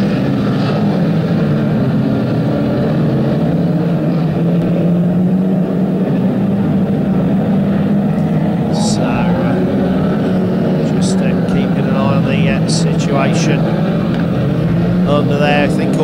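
A pack of 2-litre banger racing cars running together, engines droning steadily and revving as they lap and collide. A few short, sharp knocks come through in the second half.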